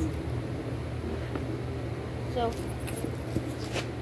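Steady low hum of an idling vehicle engine, with a few light clicks and jingles near the end as a metal cinch buckle and leather strap are handled.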